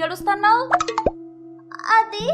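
Cartoon voice dialogue over light background music, with a brief plop sound effect about a second in.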